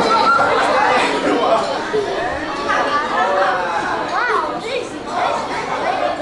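Several people talking and chattering in a large hall.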